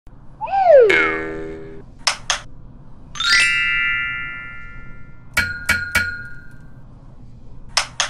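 Intro sound effects: a falling pitched swoop, then two quick clicks, then a bright ringing chime. After that come three clicks with a ringing tone that lingers, and one more click near the end.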